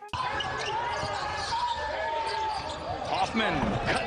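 Live basketball game sounds: a ball bouncing on the court, short high sneaker squeaks on the floor, and a steady murmur of crowd chatter.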